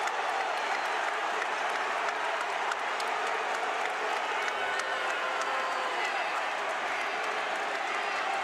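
Steady, dense din of a large arena crowd during a bench-clearing scuffle on the court: many voices at once, with scattered claps.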